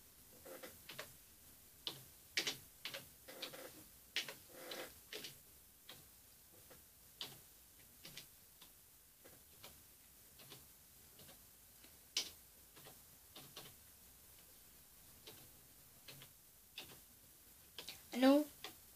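Faint, irregular light clicks and taps. They come thick in the first few seconds, then sparser with short gaps.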